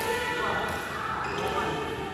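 Badminton rackets hitting a shuttlecock during a rally, a sharp hit at the start and another about one and a half seconds in, echoing in the hall, with the players' footsteps on the court.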